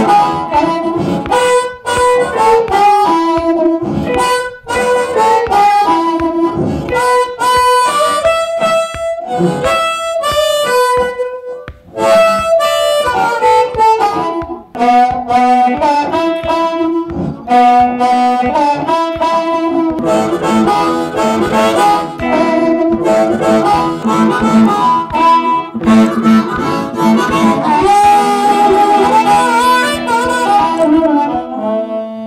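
Blues harmonica played into a handheld microphone, blowing melodic phrases over a hollow-body electric guitar, in the old Maxwell Street Chicago blues manner.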